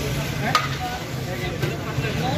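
A metal ladle stirring and scraping in a large biryani pot, with two sharp metal knocks, about half a second in and near the end, over a low background hum.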